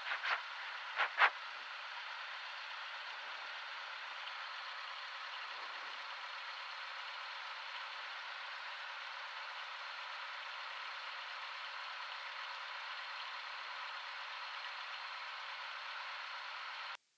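Steady hiss of the aircraft's intercom audio feed, with the RV-9A's idling engine and cabin noise coming through it thinly, with no low end. A few short clicks in the first second and a half.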